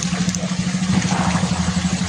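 Water trickling and splashing as a fishing net is worked by hand in shallow muddy water, over a steady low drone of a running motor.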